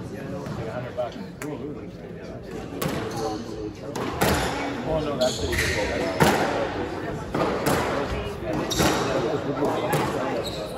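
Squash rally: the ball is struck by rackets and smacks off the court walls. Sharp hits come roughly every second and a half, growing louder from about four seconds in.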